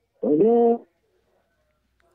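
A person's voice: one short held syllable, just over half a second long, at a steady pitch.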